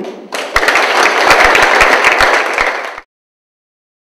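Audience applause, loud and dense with many rapid claps, cut off abruptly about three seconds in.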